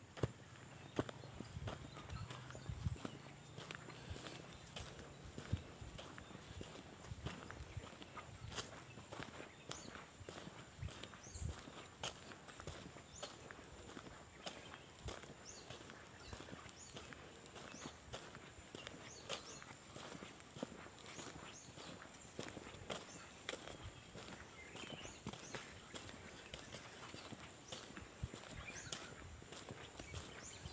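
Faint footsteps of a person walking on a bare dirt road: irregular soft crunches, about one a second.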